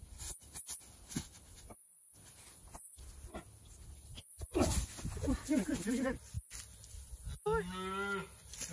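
A calf mooing several times from about halfway through, each call a pitched bawl, the last one held flat near the end, while its head is worked free from between two tree trunks. Before the calls there is faint rustling in the leaf litter and branches.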